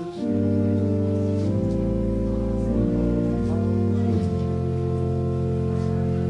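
Instrumental music of sustained organ chords, each held for a second or more before moving to the next.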